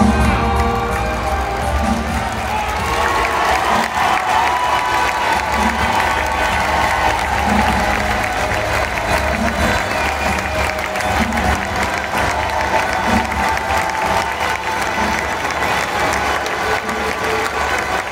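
A crowd in a large hall applauding and cheering as the tango ends, the applause swelling a few seconds in, with music still playing underneath.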